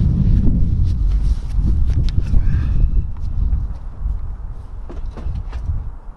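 Wind buffeting the microphone: a heavy low rumble, strongest in the first half, with a few faint clicks.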